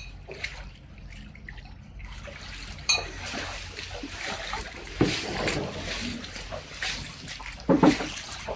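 Footsteps wading through floodwater over a wooden floor, sloshing and splashing, with sharper splashes about three and five seconds in and the loudest near the end.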